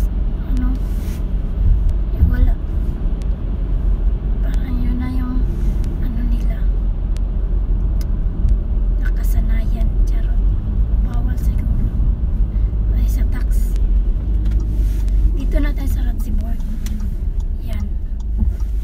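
A car driving, heard from inside the cabin: a steady low rumble of engine and road noise.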